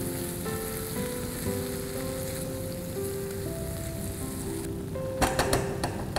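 Squid rings and ground coconut masala frying in a nonstick pan, a steady sizzle as the mixture is stirred with a spatula. A few sharp clinks near the end.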